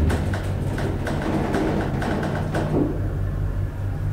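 Hydraulic elevator running upward, its pump and drive giving a steady low hum, with a few light clicks over it.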